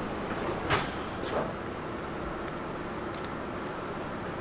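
A small metal pick working at the lock pin in a Honda K24 VTC cam gear: two brief scrapes or clicks about a second apart near the start, then only a steady low hum.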